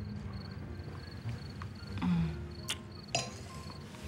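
High, rapidly pulsing cricket chirps over quiet background music, with a short low vocal sound about two seconds in and a couple of faint clicks near the end.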